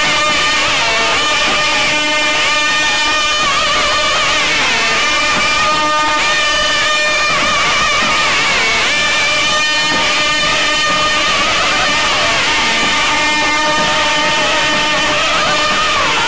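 Nadaswaram ensemble playing: several long double-reed pipes carry a gliding, ornamented melody over a steady held drone, with thavil drums beating.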